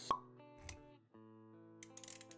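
Intro jingle of an animated logo sequence: held synthesized music notes with a sharp hit just after the start, which is the loudest moment, and a softer low hit a little later. The music briefly drops out about halfway through, then returns with faint clicks near the end.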